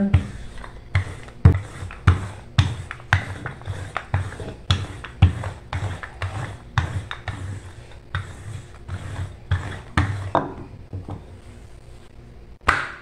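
Wooden rolling pin rolling out bread dough on a marble countertop, with a soft knock on each back-and-forth stroke, about two a second, stopping about ten seconds in.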